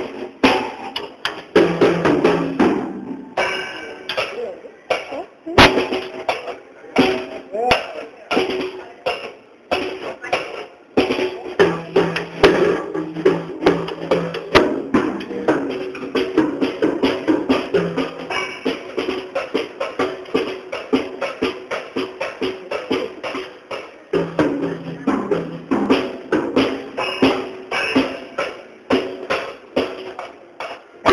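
A small child playing a drum kit with sticks, hitting the drums and cymbals several times a second in a loose, improvised way without a steady beat.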